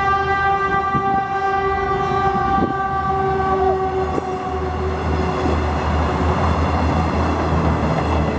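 Passenger train's horn sounding one long, steady note that stops about four seconds in, followed by the rumble of the train running past close by.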